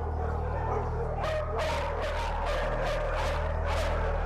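Dogs barking, a quick run of short, sharp barks starting about a second in, over a low steady hum.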